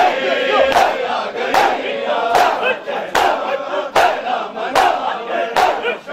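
A crowd of Shia mourners doing matam, striking their chests in unison with a sharp slap about every 0.8 seconds, while many voices call out together over the beat.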